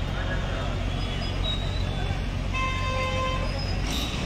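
Street traffic noise with a steady engine rumble and voices in the background, and a vehicle horn sounding briefly about two and a half seconds in.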